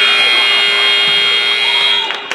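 Gymnasium basketball scoreboard buzzer sounding one loud, steady buzz for about two seconds, starting and cutting off abruptly.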